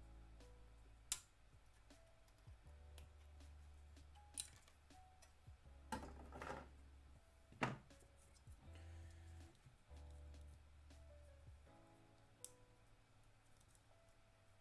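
Quiet background music with a few sharp plastic clicks and a short rustle as snap-fit model-kit parts and their runner are handled and pressed together.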